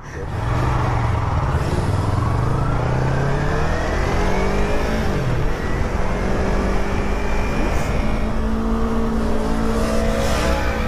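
Yamaha sport bike engine pulling away from a stop, its pitch rising steadily for about five seconds as it accelerates, then holding at a steady speed, with wind rushing over the microphone.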